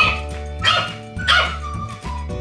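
French bulldog puppy barking three times in short barks, over background music.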